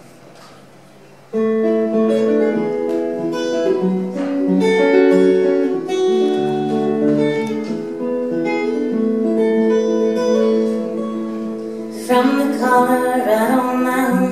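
A steel-string acoustic guitar starts the song's intro about a second in, single notes picked one after another and ringing over each other in an even, repeating pattern. A woman's singing voice comes in over the guitar near the end.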